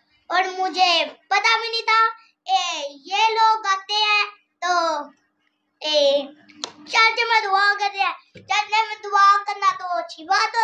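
A young boy singing in a high voice, in short sing-song phrases with brief pauses between them. There is one sharp click about two-thirds of the way through.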